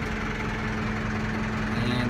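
Massey Ferguson 573 tractor's diesel engine idling steadily, heard from inside the cab as an even hum.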